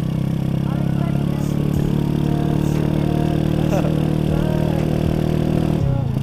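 Honda Astrea Grand's small single-cylinder four-stroke engine running steadily at cruising speed, with wind and road noise.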